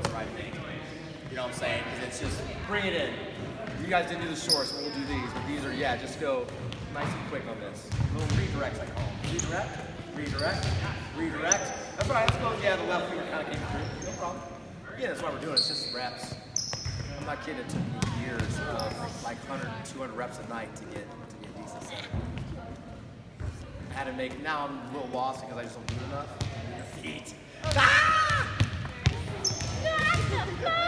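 Volleyballs being set and bouncing on a hardwood gym floor, with scattered knocks and short high squeaks from athletic shoes on the court, among overlapping voices in a large gymnasium.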